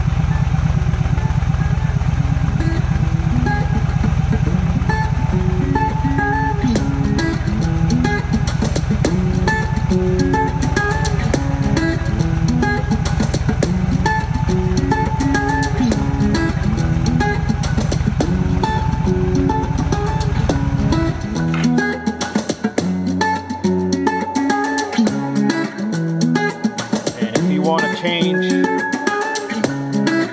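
Guitar music playing through the Yamaha V Star 1300 Deluxe's factory fairing speakers, fed from a phone over a Mpow Bluetooth receiver, over the bike's V-twin engine idling. The low idle rumble stops about two-thirds of the way through, leaving the music alone.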